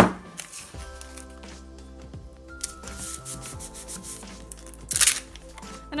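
Brown packing tape being handled and rubbed down onto a cardstock strip, with a short loud noisy burst at the start and another about five seconds in. Soft background music with sustained notes runs underneath.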